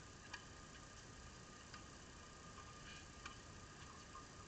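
Near silence with a few faint, sharp clicks spaced irregularly over a thin, steady faint whine.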